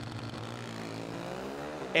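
Pro Stock drag racing motorcycles launching off the line at full throttle. The engine note climbs steeply in pitch from about a second in as they accelerate away.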